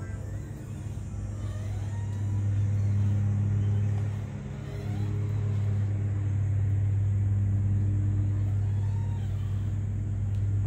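A motor vehicle engine running steadily as a low rumble, growing louder over the first few seconds and dipping briefly near the middle.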